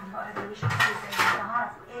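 Hard objects knocking and clattering a few times, between about half a second and a second and a half in, over voices in the background.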